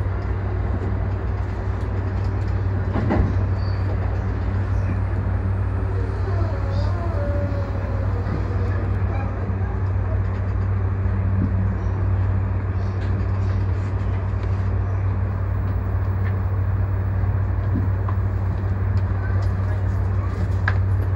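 E235-1000 series electric train heard from the front cab, a steady low hum over a rumble with no change in level.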